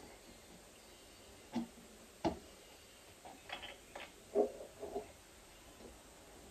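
Light clicks and knocks of medicine bottles and small containers being handled and set down on a kitchen bench: two single knocks in the first half, then a quick cluster of clicks and taps near the middle.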